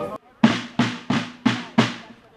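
Rope-tension field drums of a fife and drum corps beating five evenly spaced strokes, about three a second, each ringing off briefly, with no fife playing.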